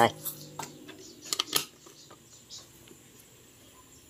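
A few light clicks and taps from a plastic seasoning jar being handled over an aluminium cooking pot, bunched in the first two seconds.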